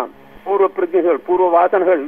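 Speech only: a man talking, starting after a brief pause at the beginning, on a narrow-band recording that sounds thin, like a radio.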